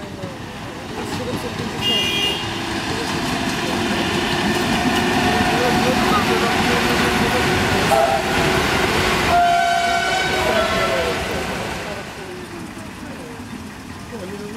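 A train passing: its rumble grows louder, holds for several seconds and eases off near the end. Short horn toots sound about two seconds in and again near the middle.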